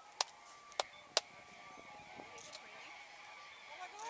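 Three sharp, short clicks in the first second or so, over faint background voices.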